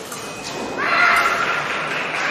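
A loud, drawn-out shout rising in about a second in, the kind of cry an épée fencer lets out on scoring a touch.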